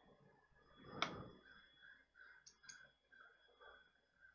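Faint computer mouse clicks over a faint steady high whine, with a short soft noise about a second in.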